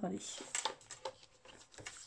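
A large sheet of scrapbooking paper rustling and sliding as it is moved around on a plastic scoring board, with a few short crisp crackles in the first second.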